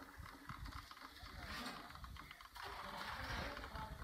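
Well-digging hoist lifting a bucket of dug earth, its mechanism rattling with rapid, irregular clicking over a low rumble.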